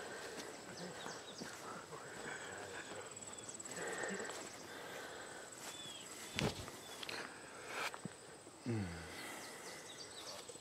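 Quiet outdoor ambience with a steady high buzz of insects, broken about six and a half seconds in by a single sharp thud as a disc golfer throws a backhand drive.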